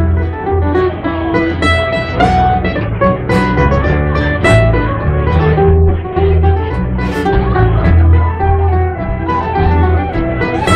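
Traditional Irish folk band playing an instrumental tune live, with strummed acoustic guitars and a plucked melody line over steady bass notes.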